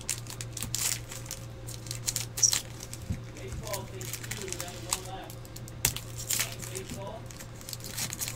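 Foil trading-card pack wrappers crinkling and cards rustling as packs are handled and opened by hand, with scattered light clicks and ticks.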